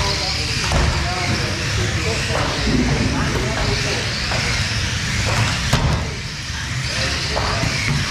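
Radio-controlled F1 stockcars racing on a carpet oval: electric motors and tyres running steadily, with a sharp knock of contact about six seconds in. Voices chatter underneath.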